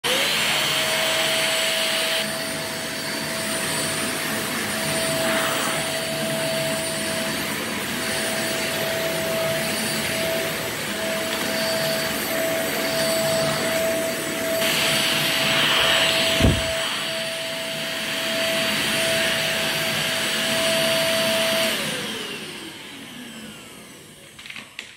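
Corded two-in-one stick vacuum cleaner running with a steady high whine over a rush of air, with one sharp knock about two-thirds of the way through. Near the end it is switched off and the motor winds down.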